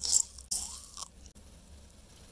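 Two short crunching noises from a chocolate-coated caramel candy bar on a wooden cutting board, the second starting about half a second in and lasting longer.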